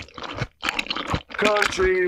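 Close-miked ASMR crunching bites and chewing, a scatter of crisp crackles through the first second and a half before a voice takes over.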